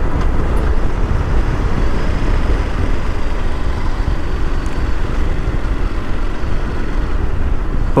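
Onboard sound of a Ducati Multistrada V2S on the move at about 35 mph and slowing: steady low wind rumble on the microphone, with the bike's V-twin engine and road noise beneath it.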